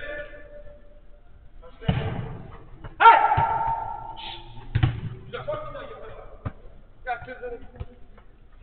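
Football kicks and ball thuds on an enclosed artificial-turf five-a-side pitch, with players' voices calling out. The loudest sudden hit is about three seconds in, with other hits just before two seconds and near five seconds.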